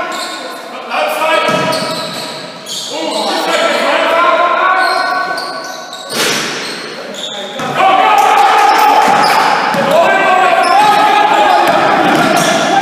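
Basketball game sounds in a sports hall: players' voices calling out over the ball bouncing on the wooden court, with the hall's echo. The voices are loudest in the last third.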